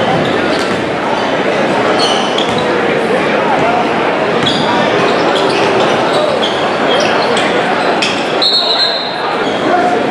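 Crowd noise in a basketball gymnasium: spectators' voices and shouts echoing in the hall, with ball bounces and short sneaker squeaks on the hardwood floor. A short high whistle sounds about eight and a half seconds in, just before play stops for an inbound.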